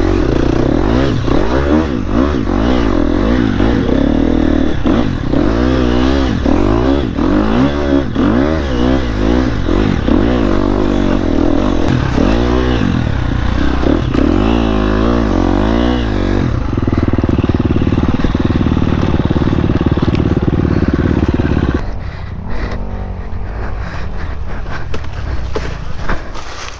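Dirt bike engine ridden over rough trail, its revs rising and falling quickly as the throttle is worked. It holds steadier for a few seconds, then drops to a quieter, lower run near the end.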